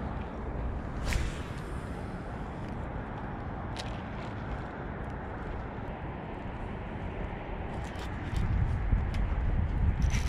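Steady low outdoor background rumble with a few faint clicks, getting somewhat louder near the end.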